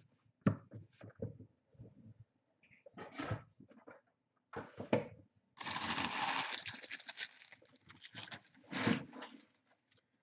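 Trading cards and foil pack wrappers being handled on a tabletop: scattered short rustles and taps, with a longer rustle from about six to seven and a half seconds in.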